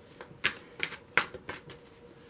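Tarot cards being shuffled by hand, with about five short, sharp card snaps spaced irregularly.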